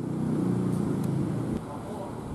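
Outdoor street ambience: a motor vehicle engine running steadily over a noisy background, dropping in level about a second and a half in.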